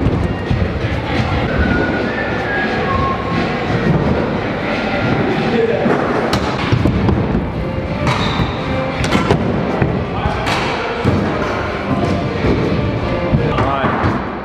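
Background music over a stunt scooter riding a skatepark ramp, with several sharp thuds of the scooter hitting the ramp, and voices in the background.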